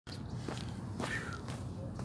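Footsteps of sneakers on asphalt, a few steps walking away, over a steady low rumble, with a short high chirp about a second in.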